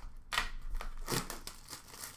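A shrink-wrapped cardboard box of hockey cards being slit open with a cutter: a run of short scraping and crinkling strokes in the first second and a half, then quieter handling of the box.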